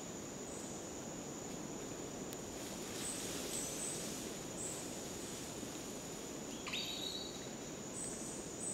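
Rainforest insects droning: a constant high, thin buzz over a steady background hiss. A brief high call cuts in about two-thirds of the way through.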